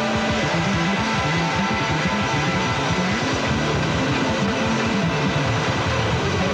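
Live Latin rock band playing an instrumental: electric guitars over a moving bass line and drums.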